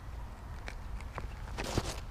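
A softball pitcher's shoes scuffing on the dirt infield during the windup and stride: a couple of light steps, then a longer scrape near the end.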